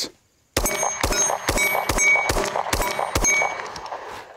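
Small semi-automatic pistol firing a string of shots about half a second apart, several followed by a ringing ping from a struck steel target. The shots stop a little before the end as the pistol runs empty and its slide locks open.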